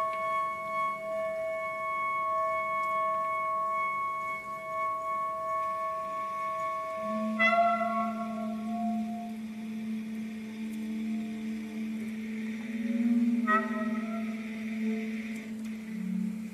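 Contemporary chamber music for flute, clarinet, bass trombone, viola and cello, played live: long held high tones, the flute among them. About seven seconds in comes a sharp accent, and a low held note enters underneath and sustains, with another short accent near the end.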